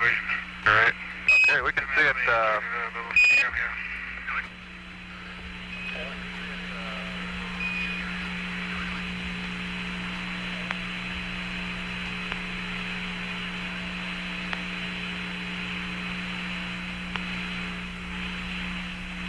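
Apollo 14 air-to-ground radio loop: a brief garbled voice transmission in the first few seconds, bracketed by two short high beeps, the Quindar tones that mark a Mission Control transmission. Then a steady radio channel hiss with a low hum.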